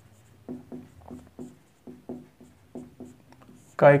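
Marker pen writing on a whiteboard in a run of short quick strokes, several a second, as a word is written out.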